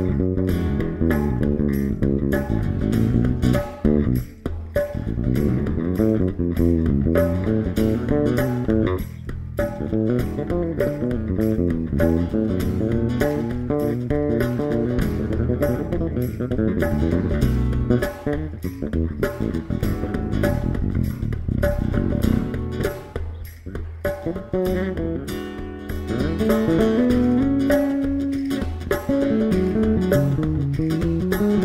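Fender electric bass guitar played fingerstyle in a solo, a dense run of melodic bass notes with a hand drum keeping time underneath.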